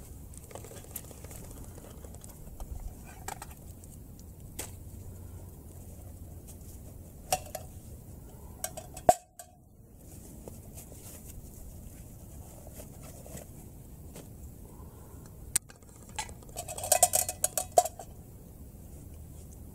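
Metal canteen cup and camp gear being handled: scattered clinks and knocks, one sharper knock about halfway through, and a quick run of metallic clattering near the end.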